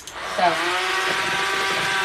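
Cordless electric hand mixer switched on at the start and running at a steady speed, its beaters whirring through cake batter in a metal bowl.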